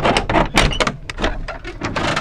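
Dilapidated wooden garden shed door being opened: a quick, loud run of knocks, scrapes and rattles.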